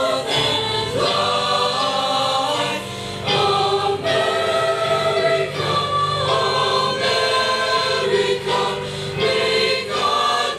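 Mixed school choir of girls and boys singing in parts, holding long chords phrase by phrase with brief pauses between phrases.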